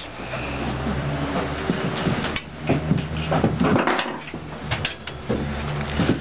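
Irregular metal clunks and knocks as a motorcycle front shock with its coil spring is handled and set into a strut spring compressor, over a low steady hum.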